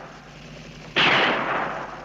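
A single gunshot from a film soundtrack about a second in, sharp and loud, ringing off over the following second. The fading tail of an earlier shot is heard at the start.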